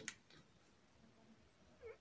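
Near silence: room tone, with one faint short tick just after the start.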